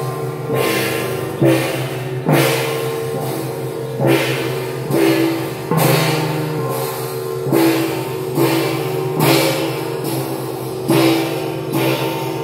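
Procession gongs and large hand cymbals struck together in a slow, steady beat, a crash a little more often than once a second, each ringing on into the next.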